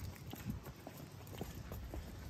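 Faint footsteps on a concrete footpath: light, irregular ticking as a small dog and the person walking it step along.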